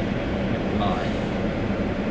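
Steady low engine rumble of a Ford Everest, heard inside the cabin while the SUV sits stationary after parking.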